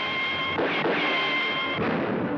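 Old cartoon soundtrack: a steady rushing noise under the score, with high held notes that break off about half a second in and again near the end.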